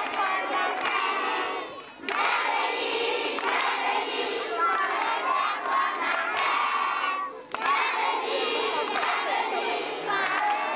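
A large crowd of schoolchildren calling out a welcome together, many voices at once, breaking off briefly twice between phrases.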